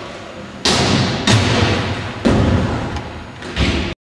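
Inline skates on a concrete floor: four sharp hits, each followed by a fading rumble of wheels rolling. The sound cuts off abruptly near the end.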